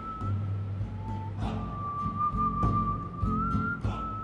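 Background music score: a long, high, whistle-like note held with a slight waver over a low steady drone, briefly breaking and shifting pitch partway through, with a few soft percussive ticks.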